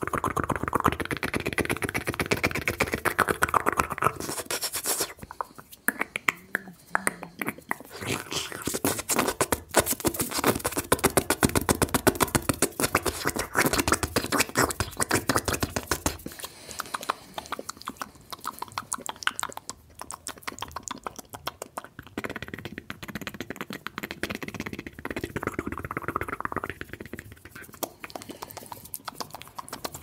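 Fast mouth sounds made close to the microphone: a rapid, dense stream of wet clicks, pops and lip smacks, thinning out briefly about six seconds in and again past twenty seconds.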